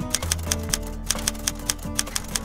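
Typewriter key-clicking sound effect, a quick uneven run of clicks about five or six a second, over background music with held notes.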